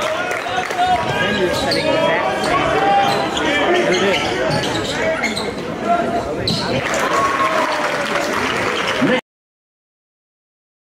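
Game sound from a basketball gym: a crowd's voices throughout, with a basketball bouncing on the court. It cuts off abruptly about nine seconds in.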